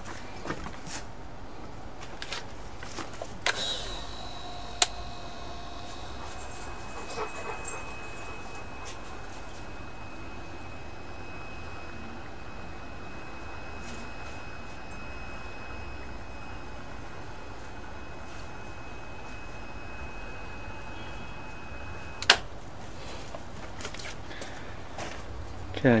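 Battery-powered caulk gun running as it drives a bead of caulk along the sill: a faint, steady motor whine that starts with a click about five seconds in and stops with a sharp click near the end.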